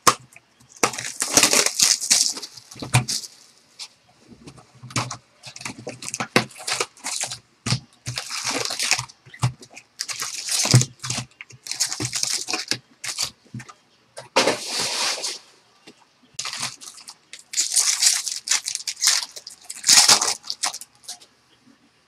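Foil wrappers of baseball card packs crinkling and tearing as the packs are ripped open and handled, in irregular bursts of crackle with short pauses between them. Between bursts, stacks of cards are handled.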